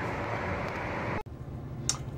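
Steady outdoor background noise, cut off abruptly a little over a second in by a quieter, steady low hum inside a motorhome's cab.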